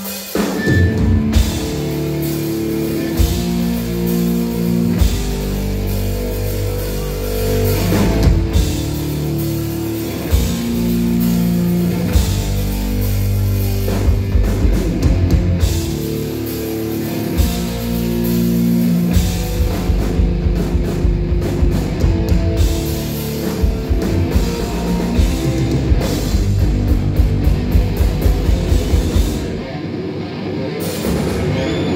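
A live stoner-rock power trio playing a loud, fast instrumental passage on distorted electric guitar, electric bass and drum kit. Near the end the drums hammer out a run of rapid, evenly spaced hits.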